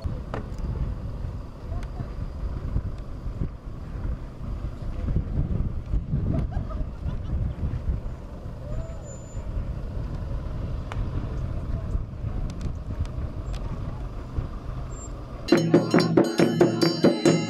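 Engines of a slow convoy of matatu minibuses driving across dirt ground, a steady low rumble with faint voices in the background. Near the end, rhythmic music with percussion cuts in abruptly.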